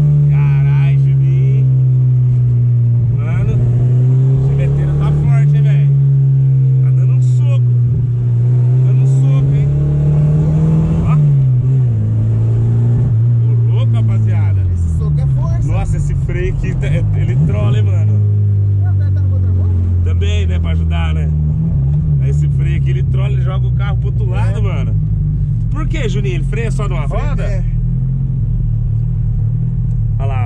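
Chevrolet Chevette's four-cylinder engine heard from inside the cabin while driving: the engine note climbs and drops with the throttle and gear changes through the first half, falls away as the car slows about halfway through, then runs lower and steadier.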